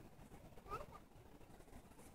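Near silence, broken once by a faint, short call that bends in pitch, a little under a second in.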